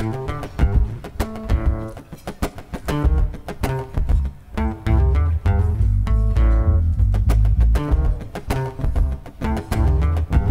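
Acoustic guitar played with picked, ringing notes. A deep, steady bass line sounds under it from about halfway.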